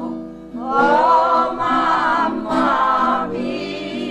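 A group of voices singing a Piedmontese folk song together in several parts. There is a short break between phrases just under a second in, then the next phrase starts.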